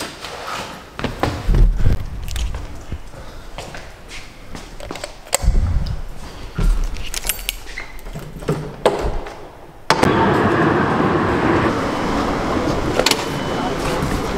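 Scattered clicks, knocks and low thumps of handling and moving about, with a door being opened. About ten seconds in it cuts suddenly to the steady running noise inside a public-transport vehicle.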